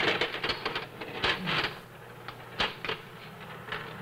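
Steel ball bearings rolling along the rails of a mechanical demonstration board, giving irregular clicks and clacks as they knock along the track and trip the switches that release the next pattern of balls. The loudest click comes about two and a half seconds in.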